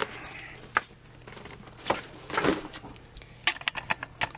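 Fabric rustling and light clicks from a detachable bat-bag flap being handled and set down: a sharp click under a second in, short rustles in the middle, and a quick run of small taps near the end.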